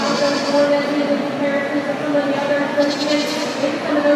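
A goat bleating twice, once at the start and again about three seconds in, over crowd chatter.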